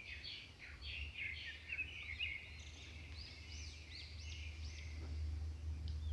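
Faint small birds chirping and twittering, with a run of short up-and-down chirps in the middle, over a steady low hum.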